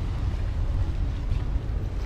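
Wind buffeting the microphone: a steady, uneven low rumble with no clear pitch.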